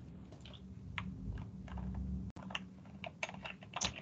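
Faint, irregular clicks of typing on a computer keyboard over a low steady hum, picked up by an open microphone on a video call.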